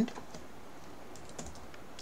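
A few faint, scattered keystrokes on a computer keyboard as a formula is typed.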